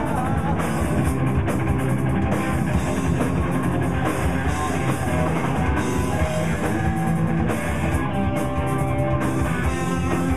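Punk rock band playing live: distorted electric guitars, electric bass and drum kit at a steady, loud level.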